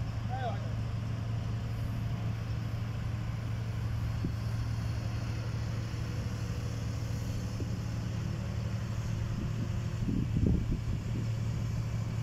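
Mobile crane's diesel engine running steadily with a low, even hum while it lifts a tank off a flatbed trailer. A short clatter of knocks comes about ten seconds in.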